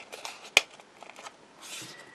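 Light handling of a sheet of adhesive foam pads and paper: small ticks, one sharp click about half a second in, and a brief rustle near the end.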